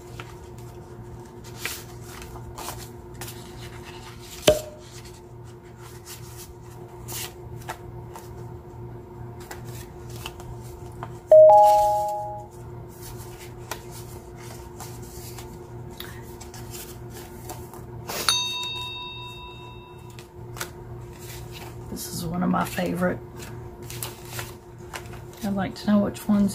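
Handmade paper cards and envelopes being handled and shuffled on a tabletop: paper rustling and light taps and slides throughout, over a steady low hum. About eleven seconds in, a loud two-note tone sounds and fades over about a second, and about eighteen seconds in a short bright high chime rings.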